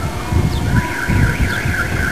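A high warbling alarm-like tone that starts under a second in and pulses about six times a second, over irregular low rumbles.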